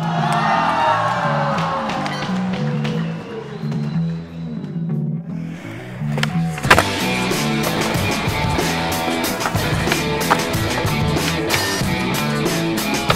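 Music with a steady bass line, with skateboard sounds over it: wheels rolling and the board popping and landing. A sharp crack comes about seven seconds in, followed by a busier run of clicks.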